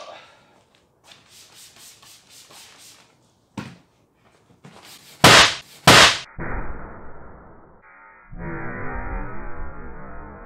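A brush scrubbing a leather car seat in a quick run of strokes, a knock, then the seat's side airbag going off with two loud bangs about half a second apart, set off by a nine-volt battery wired to it. After that a dull, muffled sound with no highs runs on: the burst played back in slow motion.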